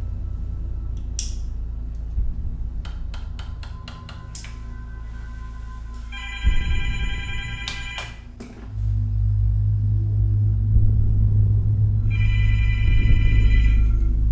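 A cordless telephone ringing twice, each ring a warbling electronic trill lasting about a second and a half, about six seconds apart. Under it runs dark film music whose low bass drone swells loud about two-thirds of the way through.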